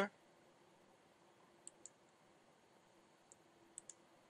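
A few faint, scattered computer mouse clicks: two close together a little under two seconds in, one more later and two near the end. Beneath them is near-silent room tone with a faint steady hum.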